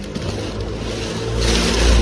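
A low motor-vehicle engine rumble that grows louder about one and a half seconds in. It is mixed with rustling of plastic rubbish bags being handled.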